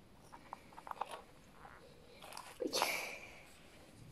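Faint clicks and light taps of small plastic Kinder Surprise figurines being handled, as a tiny paintbrush piece is fitted onto a frog figure. About two and a half seconds in there is a louder, short noisy sound.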